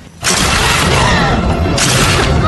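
Movie soundtrack: a sudden loud burst of dense, noisy sound effects with music underneath, starting about a quarter second in and holding steady.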